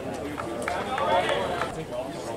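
Indistinct talk among spectators, several voices overlapping.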